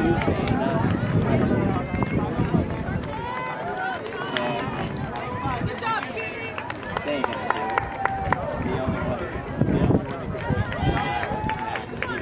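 Many voices of spectators calling out and chattering at once, with runners' footsteps passing on the track.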